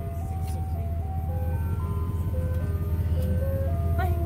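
Ice cream truck jingle playing a simple tune of evenly held single notes, stepping up and down, over a steady low hum.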